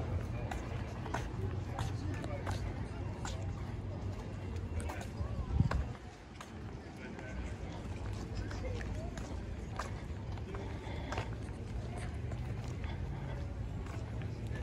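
Outdoor street ambience: people talking in the background and footsteps over a steady low rumble, with one brief thump about halfway through.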